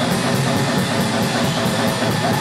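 Black metal band playing live: distorted electric guitars over a drum kit, with cymbal strikes about five times a second.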